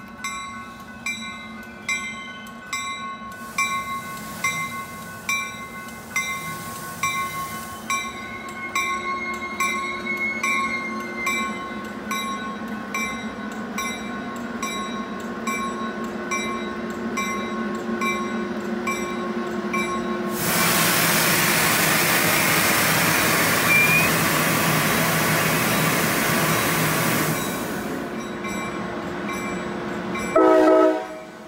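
Coaster commuter train rolling into the station and slowing, with a warning bell ringing about twice a second through the first half. About two-thirds of the way in, a loud steady rush of noise for about seven seconds as the train passes close, cutting off sharply.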